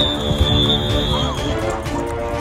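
A referee's whistle blown once, a single steady high blast of about a second and a half, over music and crowd voices.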